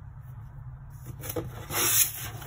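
Hands rubbing and sliding across a cardboard box, a brief swishing scrape that builds to its loudest near the end.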